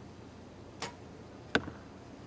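A compound bow shot: a short click of the release and string a little under a second in, then a louder, sharper smack of the arrow hitting the target boss about three-quarters of a second later.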